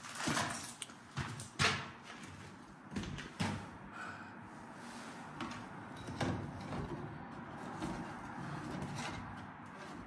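Several sharp knocks and scrapes from someone moving about and handling metal switchgear in a small room, the loudest about a second and a half in, then quieter handling noise.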